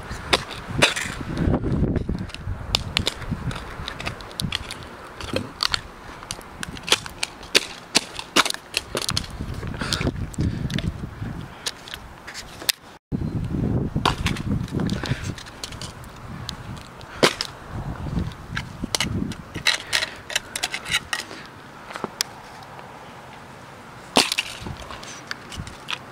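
Casio fx-7700GE graphing calculator being stomped on and knocked about on asphalt: repeated sharp plastic cracks and clatters, with duller thuds of shoe steps between them. The plastic case is holding and not breaking open.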